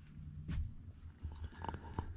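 Quiet room tone with faint rustling and a few light clicks, the handling noise of a handheld camera being turned.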